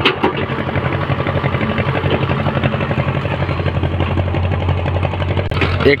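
Excavator's diesel engine running steadily, with a fast, even throb.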